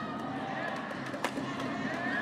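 A badminton racket striking a shuttlecock once, a little past halfway, a sharp single crack over the steady background noise of the hall.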